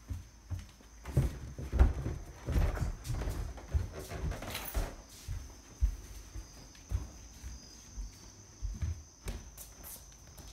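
Footsteps on a hard indoor floor: an irregular run of low thumps.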